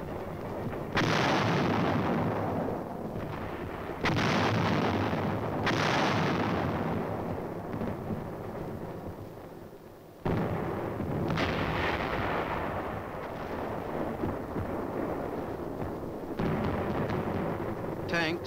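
Self-propelled 155 mm guns firing: about six heavy blasts, each a sharp report trailing off in a long rumble.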